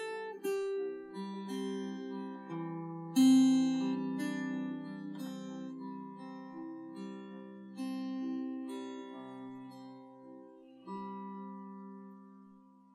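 Slow music on a plucked string instrument: notes and chords struck a few seconds apart and left to ring into each other, the loudest stroke about three seconds in. The playing dies away near the end as the piece closes.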